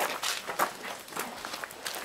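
Footsteps shuffling on gravel: a few irregular crunches.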